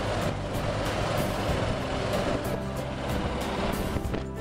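Steady ride noise of a moving vehicle, with music playing over it.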